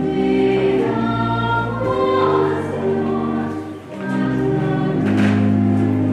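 A hymn sung by a choir with instrumental accompaniment, in slow, long-held notes that move in steps, in a reverberant church.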